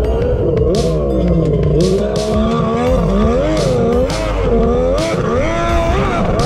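Two-stroke jet ski engine running at speed, its pitch rising and falling repeatedly as the throttle and load change, with several short splashes of the hull slapping the water.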